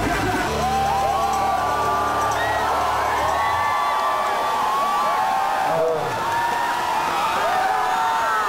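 A live band's amplified closing chord held through the stage speakers, cutting off about three and a half seconds in, under a large crowd whooping and cheering that goes on after it.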